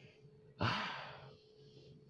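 A person's breathy sigh or exhale, a little over half a second in, fading away over about half a second.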